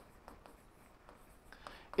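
Faint scratches and ticks of a marker pen writing a row of digits on a board in a small room.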